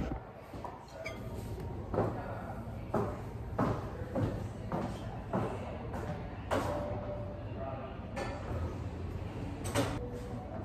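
Footsteps on a hard floor walking away, followed by scattered knocks and a door or cupboard being handled at a counter, with a brief creak-like tone in the middle and a sharper knock near the end.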